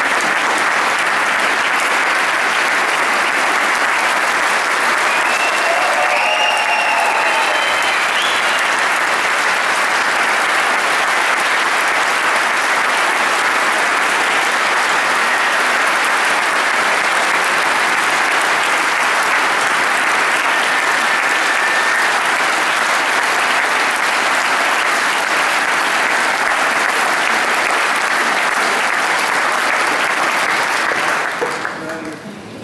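A large concert-hall audience giving a standing ovation: loud, steady applause throughout, with a short faint cheer from the crowd about seven seconds in.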